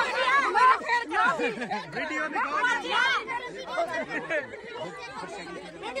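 A group of women talking over one another in animated, overlapping chatter, disputing a result.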